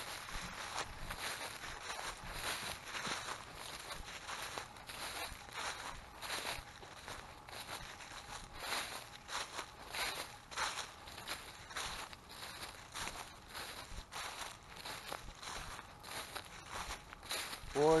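Footsteps crunching and rustling through a thick layer of dry fallen leaves at a steady walking pace.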